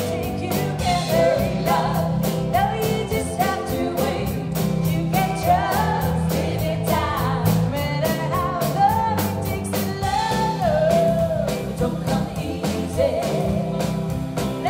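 Live sixties-style pop band playing: a woman's lead vocal over electric bass, drum kit and keyboard, with a steady drum beat.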